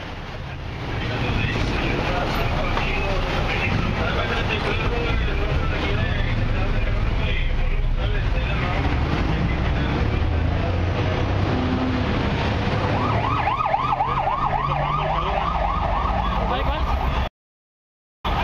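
Busy street noise with people talking and vehicle engines running. About thirteen seconds in, an emergency-vehicle siren sounds in a fast yelp, rising and falling about four times a second, for a few seconds until the sound cuts off.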